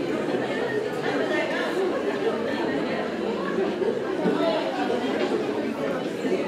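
Many voices chattering at once, overlapping and indistinct, in a large hall: a roomful of students talking among themselves.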